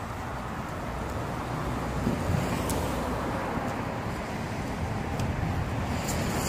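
Steady road traffic noise, a low rumble of cars that swells slightly in the first two seconds.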